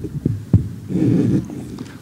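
Dull low thumps and knocks picked up by a podium microphone as it is handled and bumped. The strongest knock comes about half a second in, followed by a short muffled rumble.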